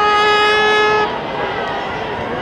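A single steady horn note, held for about a second and then cut off, over the noise of a large crowd.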